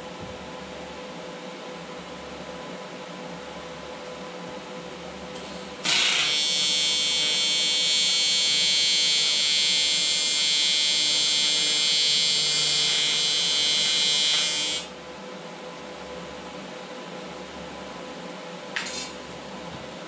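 TIG welding arc on aluminum sheet: a loud, steady, high-pitched buzz that starts about six seconds in and stops about nine seconds later, over a quieter steady hum. A brief click near the end.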